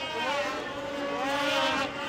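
Race snowmobiles' two-stroke engines running at high revs, their pitch climbing a little and then holding steady.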